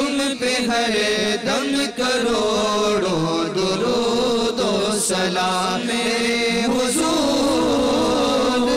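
Men's voices chanting an Urdu salaam to the Prophet, several voices together in long, wavering held notes without breaks and no percussion.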